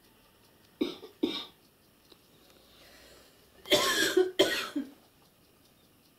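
A person coughing: two short coughs a little under a second in, then a louder double cough around four seconds in.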